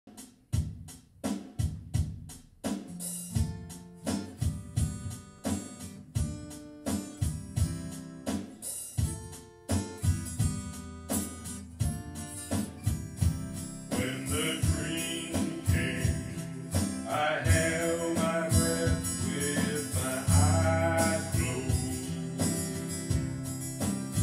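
Solo acoustic guitar strummed, spaced single strums at first settling into steady strumming, with a man's singing voice coming in over it about halfway through.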